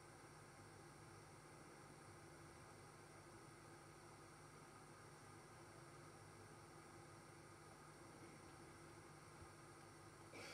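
Near silence: room tone with a faint steady hiss and low hum.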